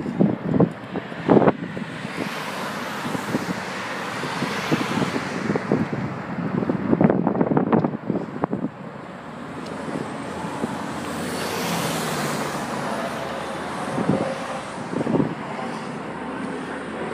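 Street traffic: several cars passing one after another, each swelling and fading away.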